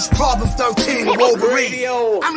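A man rapping over a hip-hop beat, with a deep bass hit near the start.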